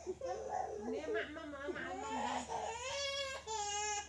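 A high-pitched voice crying and wailing, breaking into long drawn-out wavering cries in the second half.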